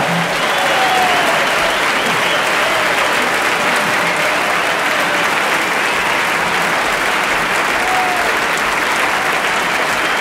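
Concert audience applauding steadily at the end of a tune, with a few scattered cheers.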